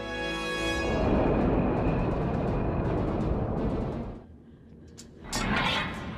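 Dramatic orchestral film-score music. A held chord gives way about a second in to a loud timpani roll that rumbles for a few seconds and dies down, then the music swells again near the end.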